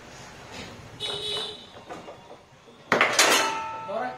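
Foosball play: the hard ball knocking against the player figures and the table, with one loud, sharp clattering impact about three seconds in that rings on briefly.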